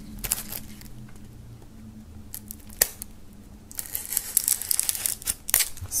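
Plastic shrink wrap on a CD case being slit with a pocket knife and torn off, crinkling. It starts about halfway through, after a few faint clicks.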